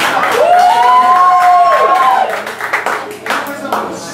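A man's voice holding one sung note into a microphone for about two seconds, gliding up into it and falling away at the end, like a ta-da sound effect for the punchline. Scattered audience clapping follows.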